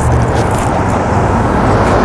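Road traffic on a street: cars passing, a loud steady rush of engine and tyre noise.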